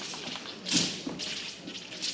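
Movement sounds from a wushu broadsword (daoshu) routine: one sharp slap-like impact, from a foot stamp or the flexible blade whipping, a little under a second in, then a few softer thuds of footwork on the competition carpet.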